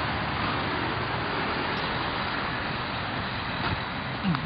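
Steady street traffic noise, an even hum of passing cars.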